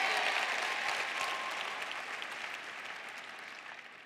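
Applause from a large arena audience, dying away gradually.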